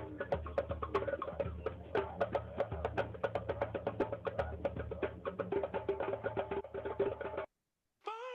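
Background music with rapid, dense clicking percussion over a steady low bass, cutting off suddenly shortly before the end.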